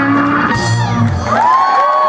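Electric blues band with guitars and drums ending a song on a final chord with a cymbal crash about half a second in; the band stops at about a second and a half, and the crowd whoops and cheers.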